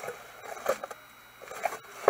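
Faint rustling and scraping of paper being handled: tissue wrapping and a printed card insert lifted out of a cardboard box, with a few brief soft handling noises.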